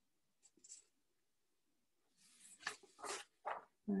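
Faint rustling of paper notes being handled, with a few short crinkles and scrapes in the second half.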